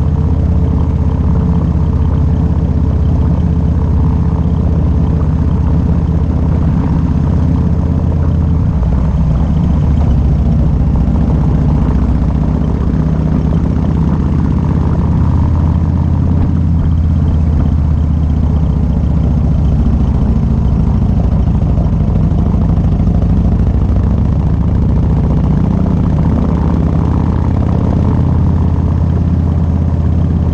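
Harley-Davidson V-twin motorcycle engine running steadily while riding on the road, heard from the bike with some wind noise. The engine note changes about nine seconds in.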